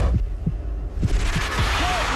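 Opening sound design of a CBS college basketball broadcast: deep, throbbing bass pulses like a heartbeat, with short low thumps. About a second in, a wash of noise swells over them, and short squeak-like tones come in near the end.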